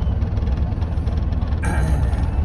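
Mercedes Vario expedition truck's diesel engine idling with a steady low rumble, heard from inside the cab while the vehicle waits. A short noisy burst sounds near the end.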